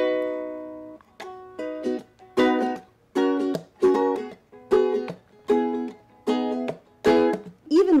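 Ukulele strummed: one chord left to ring for about a second, then a run of short chords at a steady pace, roughly one every three-quarters of a second.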